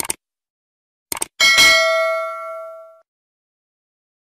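Mouse-click sound effects, two quick clicks at the start and two more just after a second, followed by a bright notification-bell ding that rings out and fades over about a second and a half. These are the sounds of subscribing and turning on the notification bell.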